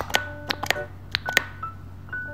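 A paper cutout cosmetic tube tapped against a paper sheet, about six quick, sharp taps, over soft background music with held tones.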